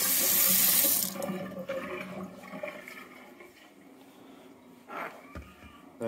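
A kitchen tap runs hot water into a stainless steel sink and is shut off about a second in. After that come faint handling sounds and a short knock near the end.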